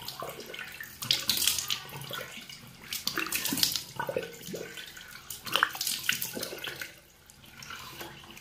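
Cold water splashed onto the face by hand at a bathroom sink, in several irregular splashes, quieter near the end.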